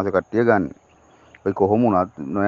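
Speech only: a man talking, with a pause of under a second in the middle.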